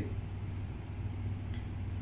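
A pause in speech with only a steady low background rumble and hum, and no distinct tool or handling sounds.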